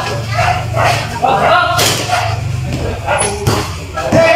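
Voices of basketball players calling out to each other over a steady low hum, with two sharp knocks about two and three and a half seconds in.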